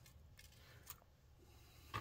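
Near silence, with a faint click about a second in and a soft tap near the end: small handling sounds of hands bundling lighting wires and moving plastic model hull parts.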